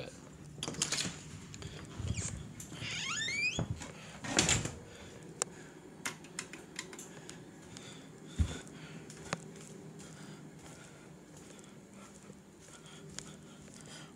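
Handling noise and scattered clicks and knocks from a camera being carried around a room, with a short rising squeak about three seconds in, a louder rustle-like noise a second later and a low thump a little past eight seconds.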